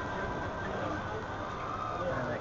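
Faint, indistinct voices over a steady background hiss.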